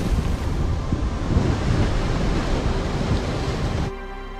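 Film sound effects of a nuclear explosion at sea: a loud, deep, steady rumble mixed with rushing wind and water. It cuts off suddenly near the end.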